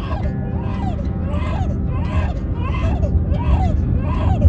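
Baby crying in short rhythmic wails, about two a second, over the steady low rumble of a moving car's cabin. He is distressed at being strapped into his car seat.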